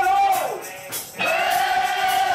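Live band music with a voice singing two long held notes. The first note ends about half a second in and the second begins just after a second in, over light percussion.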